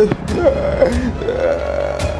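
A person making several short wordless guttural vocal sounds with bending pitch, over a low steady hum.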